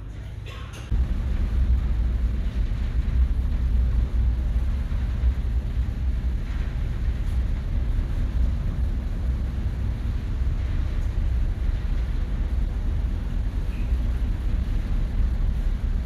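Steady low rumble of the ferry's engines and hull vibration heard inside the passenger deck, starting abruptly about a second in.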